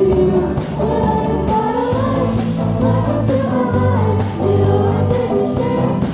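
Live ensemble performance: several voices singing together over strummed acoustic guitars and a bass line, with a steady beat.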